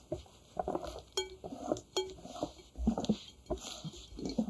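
Wire whisk mixing meringue into cheesecake batter in a glass bowl: irregular stirring strokes, with two sharp clinks of the wires against the glass about a second and two seconds in.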